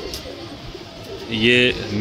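Domestic pigeons cooing softly in the loft, with a man's single short word about a second and a half in.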